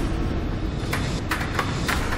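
A large game counter tumbling down through the pegs of the Tipping Point coin-pusher machine: a rumbling clatter with several sharp clicks as it strikes pins on the way down.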